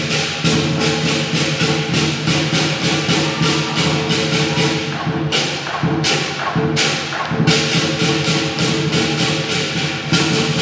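Lion dance percussion ensemble of drum, cymbals and gong playing a fast, steady beat, with cymbal clashes about three a second over a ringing wash. Around the middle the pattern changes briefly and the clashes come further apart, before the fast beat resumes.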